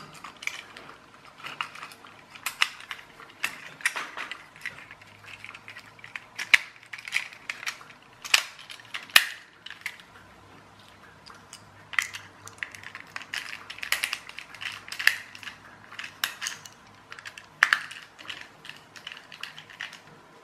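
Screwdriver and small plastic parts of a toy car clicking and clattering while it is put back together, in irregular sharp clicks and taps.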